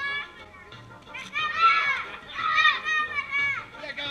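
A group of children shouting and squealing in high voices, loudest from about a second in, with music playing in the background.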